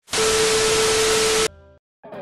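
TV static sound effect: a loud hiss with a steady mid-pitched tone under it, lasting about a second and a half and cutting off suddenly, followed by a short fainter buzz.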